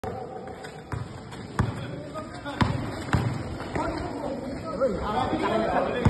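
A basketball being dribbled on a concrete court, a run of sharp bounces in the first three seconds, with voices talking over it from about halfway through.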